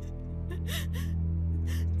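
A woman's gasping, upset breaths, a few in quick succession, over a low, steady music drone.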